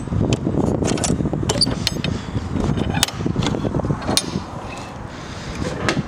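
Metal latch bar on a horse trailer's rear door being lifted and the door swung open: a series of sharp metallic clicks and rattles, most of them in the first two seconds, over steady background noise.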